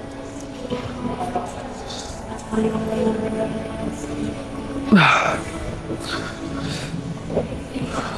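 Background music with steady held tones, with a brief loud sound about five seconds in.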